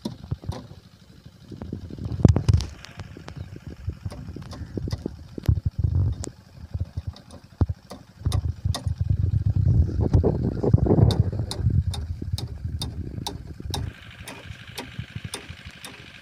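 Scattered sharp metal clinks and knocks as hands and a spanner work at a tractor's mud-caked rear hitch and rotavator, over low rumbling that swells and fades. A steady higher hum comes in near the end.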